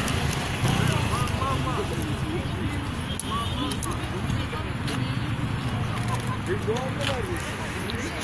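Indistinct background chatter of people's voices over a steady low rumble of road traffic.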